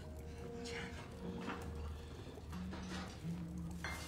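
Low, grunting, animal-like vocal sounds and short breathy sniffs over a steady low rumbling drone, from a film soundtrack.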